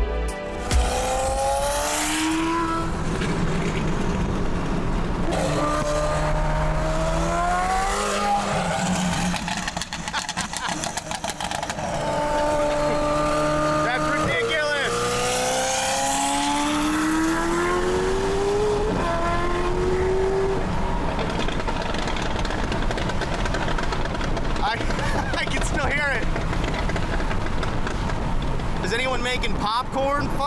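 A car engine accelerating hard through the gears, its revs climbing and then dropping at each shift, several pulls in the first twenty seconds, then running more steadily, over road and tyre noise.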